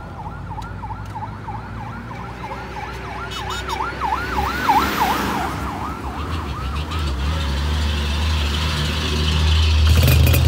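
An emergency vehicle's siren in a fast up-and-down yelp, about three to four sweeps a second, growing louder until about five seconds in and then fading away. A heavy vehicle's low engine rumble then builds toward the end.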